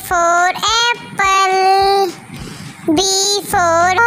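A child's voice singing an alphabet phonics song in short sung phrases, one note held for about a second.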